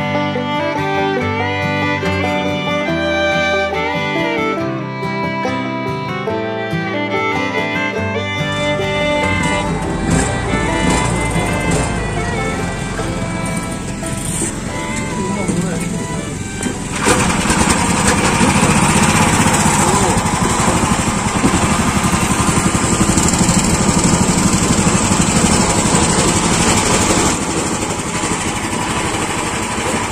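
Fiddle music for the first several seconds, then the boat's small inboard engine running. About halfway through, the engine gets suddenly louder as it revs up and the boat gets under way.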